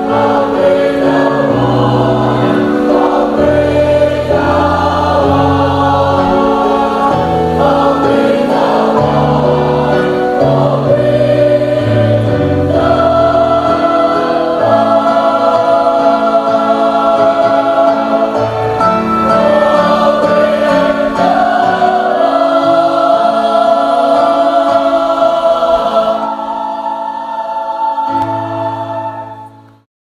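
Choir singing a hymn in full harmony, ending on a long held chord that fades out in the last second.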